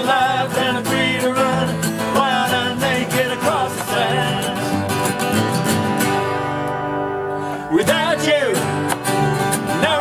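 Several acoustic guitars played together, with a voice singing a wavering melody over them. The playing thins to held chords for about a second around seven seconds in.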